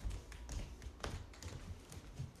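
Faint, irregular light taps and clicks, a few a second.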